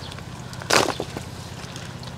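A short rustling scrape with a couple of small clicks after it, about three-quarters of a second in, as a root-bound plant's root ball is worked out of a flexible plastic nursery pot and roots tear free at the drainage holes. A steady low machine hum from lawn equipment runs underneath.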